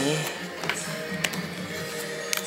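Background music with steady held notes. Two sharp clicks about half a second apart in the middle are the RAM module of a 2009 white MacBook being pressed home into its memory slot.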